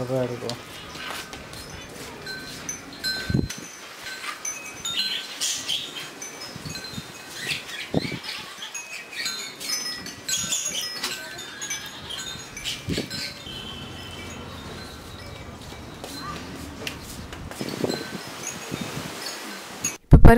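Hands working masala-coated mackerel in an aluminium bowl and laying the pieces on a steel plate: a few sharp knocks and soft handling noises, amid many short, high ringing tones scattered throughout.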